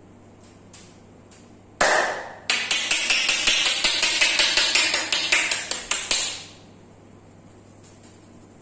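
Head-massage tapping: a masseur's palms, pressed together, striking a man's scalp. It starts with one sudden loud stroke about two seconds in, then a fast run of taps, about six a second, that stops a little after six seconds.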